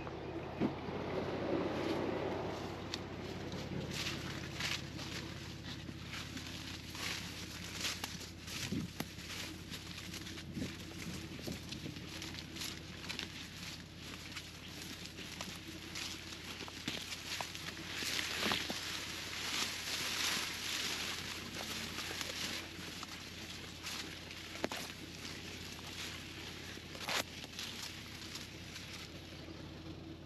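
Corn leaves rustling and crackling as someone walks through a drought-dried cornfield, the stalks brushing against body and camera, with footsteps on dry ground. The rustling is louder for a few seconds a little past the middle.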